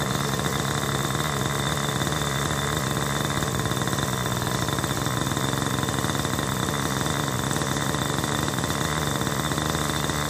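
Raptor 50 RC helicopter's .50-size two-stroke glow engine idling steadily on the ground, with a steady high whine running alongside.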